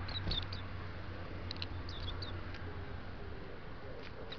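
Japanese white-eye giving short, thin high calls: a quick cluster at the start and another about one and a half to two and a half seconds in, over a steady low hum.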